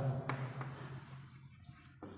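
Chalk scratching on a chalkboard as a hand writes, in faint short strokes that thin out in the second half.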